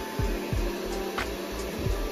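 Handheld hair dryer blowing steadily, a constant airy hiss, with background music and its beat underneath.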